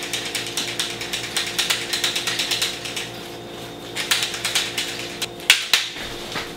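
Rapid mechanical clicking, like a ratchet, at about ten clicks a second: one run for about three seconds, a short lull, a second run, then a few sharper single clicks near the end.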